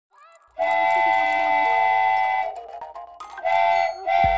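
Cartoon train whistle sound effect: one long, steady blast of about two seconds, then a short second blast near the end.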